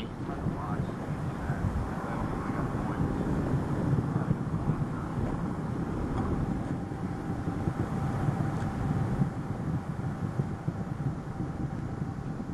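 Steady, rough rumbling noise of Space Shuttle Atlantis climbing under its solid rocket boosters and main engines, with a faint steady tone coming in about halfway through.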